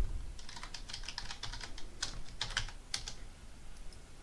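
Typing on a computer keyboard: a quick run of about a dozen key presses that stops about three seconds in.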